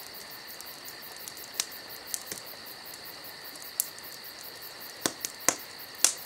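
Campfire crackling, with a handful of sharp pops scattered through, over a steady chirring of crickets.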